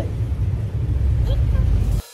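Wind buffeting the microphone aboard a moving ferry: a heavy, uneven low rumble.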